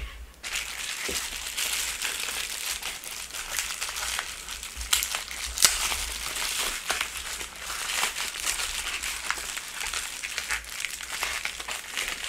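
Packing wrap crinkling and rustling continuously as it is unwrapped by hand, with many small crackles.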